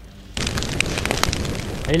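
Fire flaring up suddenly about half a second in, then burning steadily with crackles: the overturned model car catching fire.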